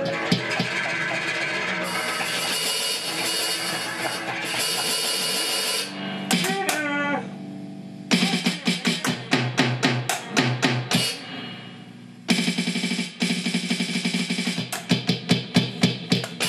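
Yamaha DD-5 digital drum pad played with sticks: electronic drum hits in quick patterns, over sustained pitched sounds for the first six seconds. A falling pitch sweep comes about six seconds in, and the playing stops briefly twice before the hits resume.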